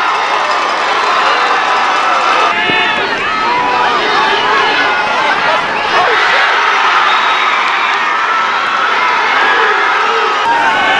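Football crowd cheering and shouting, many voices yelling at once; the sound changes abruptly about two and a half seconds in.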